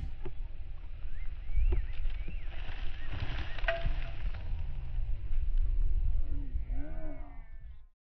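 Slowed-down, deepened outdoor sound of a group tossing dirt with shovels: a low rumble with a few sharp knocks, and a drawn-out, wavering voice near the end before it cuts off.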